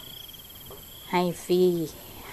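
An insect trilling steadily in a high, fast-pulsing tone, probably a cricket.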